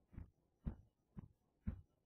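A steady beat of dull thumps, about two a second, added as a sound effect.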